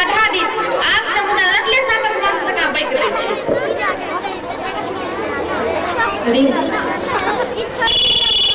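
Several people talking at once, their voices overlapping into indistinct chatter.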